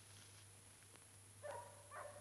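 Near silence, broken near the end by two short, faint animal calls about half a second apart.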